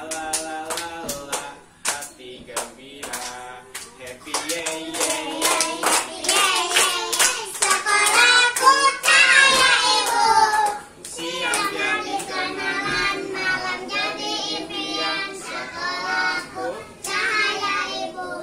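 A group of young children singing a song together with their teacher, clapping their hands in time; the clapping is densest in the first half and returns briefly near the end.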